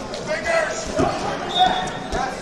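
Wrestlers' feet and bodies thudding on a foam wrestling mat, with one heavier thump about a second in, over crowd voices in a large hall.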